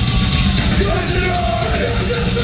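A punk rock band playing live at full volume: distorted electric guitar and bass with drums, and shouted vocals on top.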